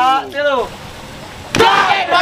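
A bamboo carbide cannon (meriam karbit) fires once about one and a half seconds in: a single sharp boom with a short ringing tail, set off by a flame touched to its ignition hole.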